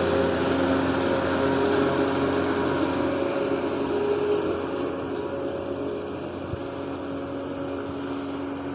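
Diesel engine of an Ashok Leyland 3118 twelve-wheel truck running steadily as the truck passes close by and pulls away up the climb. The sound fades and grows duller over the second half. The truck is perhaps in a low crawler gear for the ghat.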